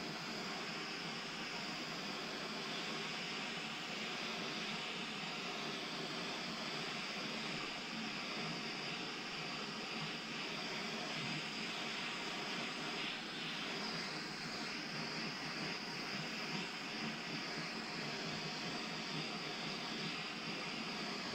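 Handheld gas torch burning with a steady hiss, its blue flame played over wood to scorch it.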